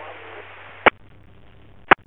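Radio scanner hiss on an open race-control channel, cut off above about 4 kHz, with two sharp clicks about a second apart.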